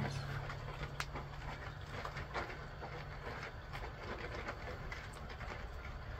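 Faint, irregular crinkling and crackling of a plastic tarp as puppies scramble over and tug at it, with a sharper crackle about a second in, over a steady outdoor background hiss.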